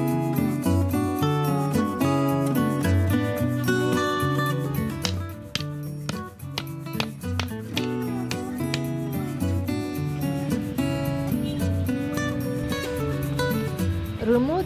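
Background music led by a plucked acoustic guitar over a repeating bass line.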